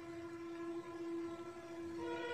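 A faint steady tone with several overtones, held without change in pitch.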